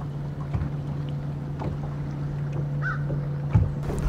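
Steady low hum of a fishing boat's motor, with a couple of soft thumps and one short, faint bird chirp about three seconds in.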